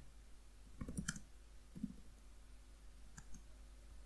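Faint, scattered clicks of computer keyboard keys being typed, a few at a time with short gaps between them.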